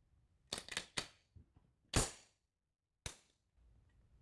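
Sharp metallic clicks and clacks of a Colt 1911 pistol's slide and parts being worked by hand: a quick run of four clicks about half a second in, the loudest clack about two seconds in, and one more about a second later.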